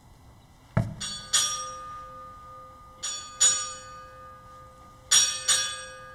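Ship's bell struck in three pairs, two quick strikes a pair, ringing on between the pairs: the arrival bells for a rear admiral. A single thump comes just before the first pair.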